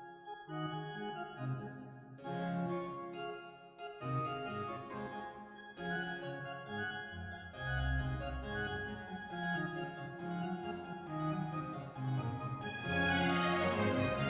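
Harpsichord and organ playing the opening of a lively baroque-style Allegro in D major, with quick running figures, rendered by Finale notation-software playback.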